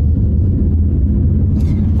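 Steady low rumble of road and engine noise inside a car's cabin while driving at highway speed.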